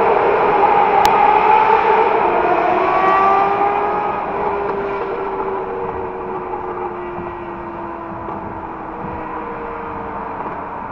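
Motorcycle engine running at cruising speed, its note echoing in a road tunnel, then growing quieter and less echoey as it comes out of the tunnel about four seconds in. The engine pitch falls slowly as it eases off. There is a single sharp click about a second in.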